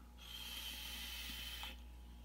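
A drag on a vape: air hissing through the device's airflow as he inhales, with a thin high whistle. It lasts about a second and a half and stops sharply.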